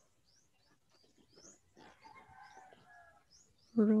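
Small birds chirping repeatedly, short high chirps about three a second, with a fainter, longer call in the middle.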